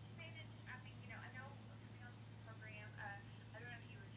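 Faint, thin telephone voice leaking from a phone's earpiece: the interviewer speaking on the other end of the call, over a steady low hum.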